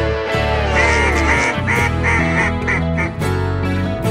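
Duck call blown in a run of quacks: a falling note first, then quick repeated quacks, over background music.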